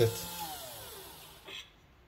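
Starseeker Edge coffee grinder's motor spinning down after being switched off. Its hum falls steadily in pitch and fades out over about a second and a half, with a faint click near the end.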